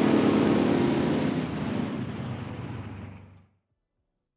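Outro sound effect for an animated logo: a loud rushing roar with a steady low drone under it. It fades out and ends about three and a half seconds in.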